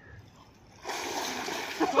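Pool water splashing, starting suddenly just under a second in as one man heaves himself up onto another's shoulders in the water. Laughter breaks out near the end.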